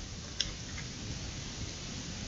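Small clicks of polythene tape being handled while it is wound around a cleft graft on a seedling stem: one sharp click about half a second in and a fainter one just after, over a steady hiss.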